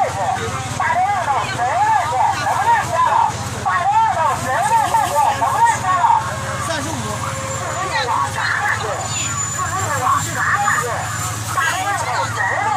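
Voices talking at a market stall, over a steady low rumble.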